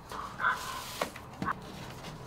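A vinyl LP and cardboard gatefold record sleeves being handled: a brief rubbing squeak in the first half, then two light knocks about half a second apart.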